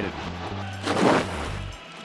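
Background music under an inning title card, with a single whooshing hit of a transition sound effect about a second in.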